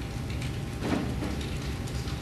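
A pause in speech holding only the steady background noise of a courtroom audio feed: a low hum under a hiss, with a faint brief sound about a second in.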